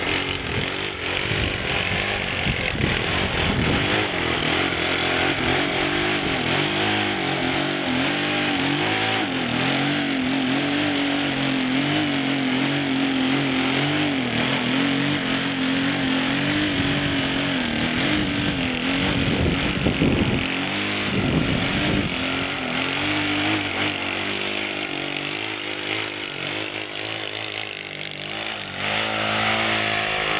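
Saito 125 four-stroke glow engine on an RC aerobatic plane, running continuously with its pitch wavering up and down as the throttle is worked to hold the plane in a nose-up hover. Gusts of wind buffet the microphone about two-thirds of the way through.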